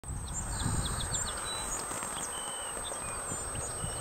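Open-air rural ambience: a low, uneven rumble of wind on the microphone with small birds chirping in short high notes, a quick run of them in the first second and a half and scattered ones after.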